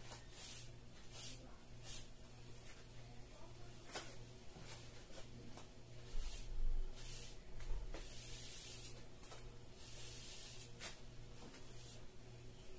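A kitchen sponge dragged down a wet-painted board in repeated strokes, a soft scratchy swish with each stroke, streaking the paint into a wood grain. A dull low bump comes about six to seven seconds in, over a faint steady hum.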